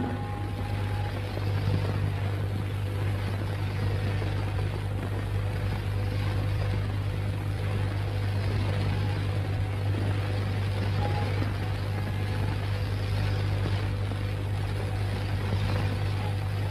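Steady low hum and hiss from an old film soundtrack, with no music or dialogue; a last faint musical note fades out about a second in.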